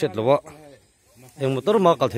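Speech only: a person talking in two short phrases, with a pause of about a second between them.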